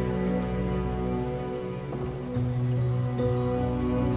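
Calm background music of sustained chords, shifting to a new chord a little past halfway, with faint scattered ticks like falling rain.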